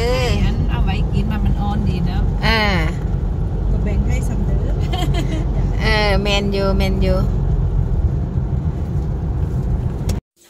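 Steady low rumble of a car's road and engine noise heard from inside the cabin while driving, with voices talking briefly over it a few times.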